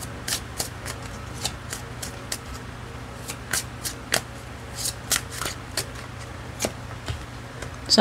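A deck of tarot cards being shuffled by hand: irregular soft snaps and flicks of cards, about two or three a second, over a faint steady low hum.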